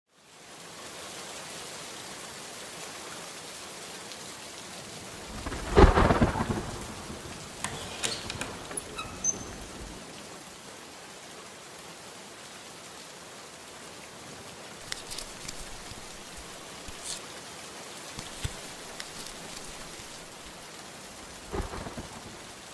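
Steady rain with one thunderclap rumbling about six seconds in, the loudest moment. A few light clicks and knocks come later.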